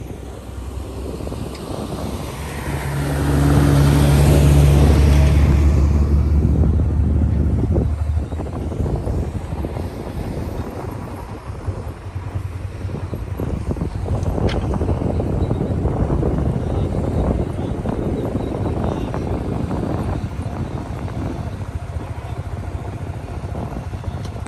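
A vehicle engine drones close by, loudest about four seconds in and fading by about eight seconds. It is followed by steady wind buffeting and engine and road rumble from a motorcycle riding along an unpaved road.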